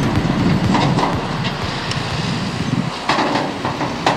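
John Deere tractor and high-sided OSG trailer coming along a rough field track: engine running with a low rumble and the empty-sounding trailer body rattling and clanking, with a couple of louder clanks near the end.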